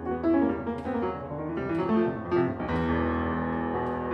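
Solo jazz piano on a grand piano: chords and melody notes struck in quick succession over sustained bass notes.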